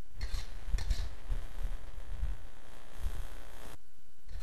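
A utensil scraping briefly in a metal wok as stir-fried cabbage is lifted out onto a plate, over a low, steady rumble.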